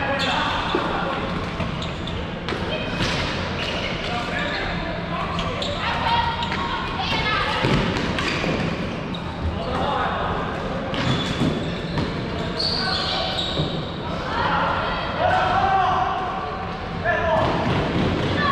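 A floorball game in play in a reverberant sports hall: players shouting and calling to each other, with scattered knocks of sticks and the plastic ball and footfalls on the court floor.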